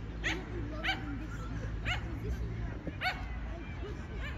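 A dog yipping: four short, high, falling calls, irregularly spaced over about three seconds, with voices and a low steady rumble behind.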